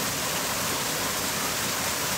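Steady rushing of flowing stream water.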